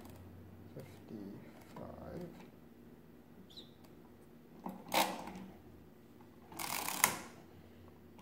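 Setting levers on a 1920s Rapid pinwheel calculator being moved by finger through their notches: a few light clicks, a sharper click about five seconds in, and a short scraping rattle of the mechanism near the end.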